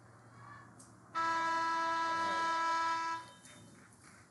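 Scoreboard horn sounding one steady blast of about two seconds, starting a little after a second in: the signal that the period's clock has run out.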